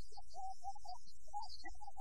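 Steady low mains hum and hiss from an old film soundtrack, under a faint, broken single-note melody line from the background score.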